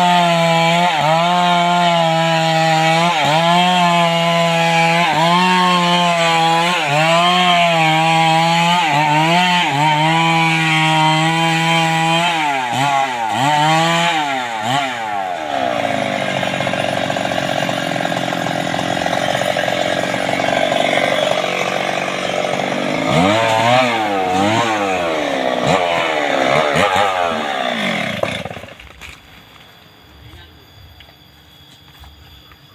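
Stihl MS 382 two-stroke chainsaw ripping a mahogany log lengthwise into boards, its engine pitch dipping about once a second under load. After about twelve seconds it is revved up and down several times, runs on, is revved again, and cuts off shortly before the end.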